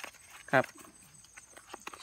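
A man says one short word, "khrap"; the rest is near quiet, with only faint scattered clicks.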